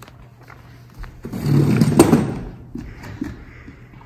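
A person moving about among metal folding chairs on a wooden stage: a scuffling, clattering noise that rises about a second in, with one sharp knock about two seconds in, then a few light steps.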